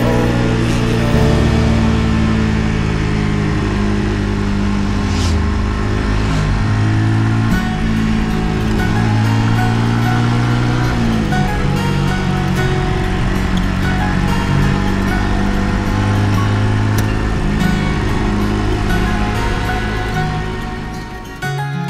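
Brixton Cromwell 125's single-cylinder engine running at road speed, its pitch dropping and shifting about eleven seconds in, heard under background music.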